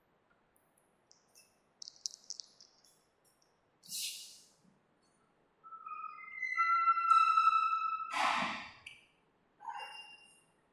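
Whiteboard marker squeaking as a new line is written: a few faint scratches, then a squeal of about two seconds that shifts pitch a few times. It ends in a short, louder scratchy rasp.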